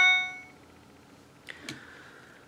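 A single bright ding that rings out and fades within about half a second, followed by two faint clicks about a second and a half in.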